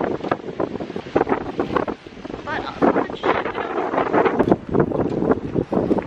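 Wind buffeting a handheld camera's microphone outdoors in uneven gusts, with a brief lull about two seconds in.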